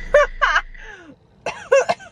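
A woman laughing, then coughing and clearing her throat in short bursts, with a brief lull about a second in.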